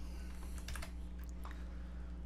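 Computer keyboard keys being pressed, a handful of separate keystrokes, over a steady low hum.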